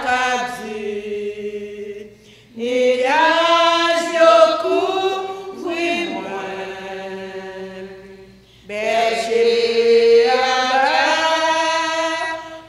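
Women's voices singing a slow hymn unaccompanied, in long held notes. The phrases break for short breaths about two seconds and eight and a half seconds in.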